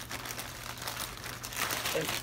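Plastic mailer packaging crinkling and rustling in the hands as a mail package is handled and opened, in irregular bursts.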